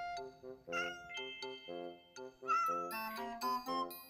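A domestic cat meows, once about a second in and again halfway through, over light background music.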